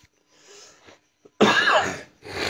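A person coughing: a faint breath about half a second in, then one loud cough about one and a half seconds in.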